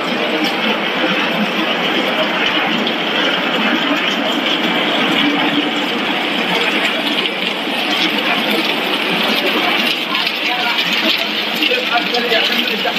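Steady, loud running noise of snack-food extrusion machinery on a corn-curl production line.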